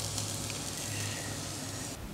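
Elk backstrap and sweet potato slices sizzling steadily on a grill.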